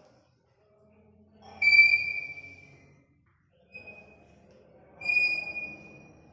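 Chalk squeaking on a blackboard as a drawing is chalked in. A loud, high, steady squeal with a scraping undertone starts about one and a half seconds in and fades over about a second. A brief squeak follows near four seconds, and another squeal comes near the end.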